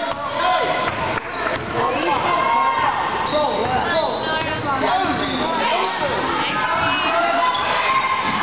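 Basketball being dribbled on a hardwood gym floor during play, with voices calling out in the gym.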